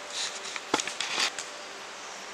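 Footsteps through dry leaf litter and undergrowth: short bursts of rustling and crunching, with a sharp crack about three-quarters of a second in.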